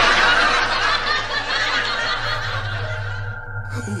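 People laughing over background music, with a man laughing again just before the end.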